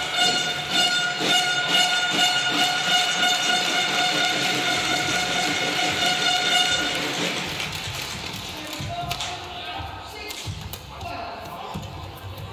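Badminton rally: racket strikes on the shuttle and shoe squeaks on the court. For about the first seven seconds a steady horn-like tone with a stack of overtones runs underneath, then stops.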